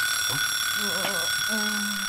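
Cartoon alarm-clock timer ringing: a steady, unbroken high electronic tone that signals the hour is up.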